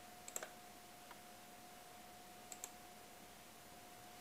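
Computer mouse clicks: two pairs of short, sharp ticks, one about a third of a second in and one about two and a half seconds in, each a press and release of the button, over a faint steady tone. Otherwise near silence.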